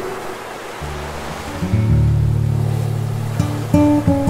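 Soft acoustic guitar music, low notes ringing out about a second in and again just before two seconds, a few higher plucked notes near the end, over the steady wash of ocean waves breaking on the shore.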